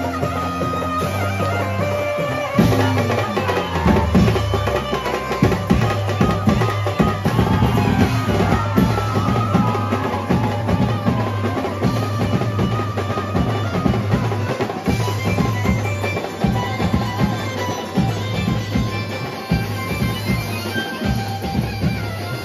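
Live Mumbai-style banjo band playing through loudspeakers: an amplified banjo melody over drums and cymbals, the drumming turning loud and dense about three seconds in and keeping a steady driving beat.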